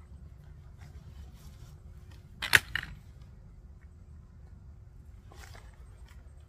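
Camping gear being handled: one loud, sharp click about two and a half seconds in, a softer click right after it, and a brief rustle near the end.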